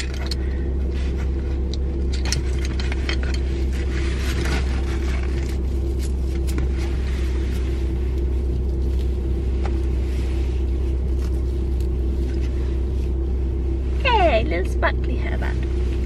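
Steady low rumble of a small car's engine idling, heard inside the cabin, with light rustling as a hairband is put into the hair. A brief vocal sound comes near the end.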